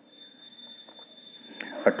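A steady, high-pitched electronic tone, with fainter higher overtones, sounding over low background noise.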